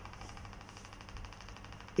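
Faint steady background hum and hiss of a small room: room tone.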